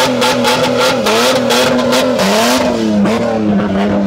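Ford Falcon's engine held at high revs through a burnout, its pitch dipping briefly a few times, over the rough hiss of the spinning, smoking rear tyres. The tyre noise fades near the end as the car rolls off.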